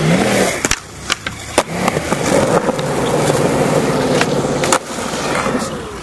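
Skateboard wheels rolling on concrete, with several sharp clacks of the board: four in the first two seconds and two more past the four-second mark.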